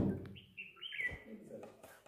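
A short burst of noise at the very start, then a bird chirping several times in quick, short, high chirps during the first second or so, with faint voices murmuring underneath.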